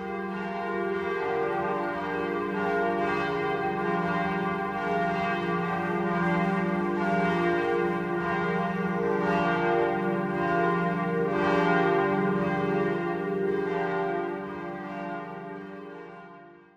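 Church bells ringing together in a continuous peal, the strikes overlapping into a dense ringing that fades out near the end.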